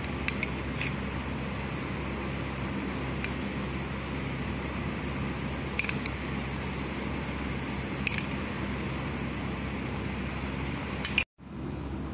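Steady low room hum with a few soft, widely spaced clicks from a spoon as sweet chutney is spooned over the tikkis.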